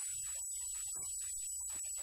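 Low, steady electrical mains hum with a thin, steady high-pitched whine above it.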